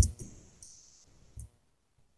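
Clicks and handling noise close to a desk microphone: a low thump with sharp clicks at the start, two brief hisses in the first second, and a single small click about one and a half seconds in.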